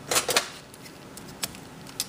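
Handling noise from a hand picking things up off a wooden workbench: a quick cluster of sharp clicks and knocks about a quarter second in, then single short clicks near the middle and at the end.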